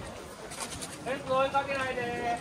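Outdoor crowd murmur, then about a second in a high-pitched voice calls out in a drawn-out, gliding exclamation.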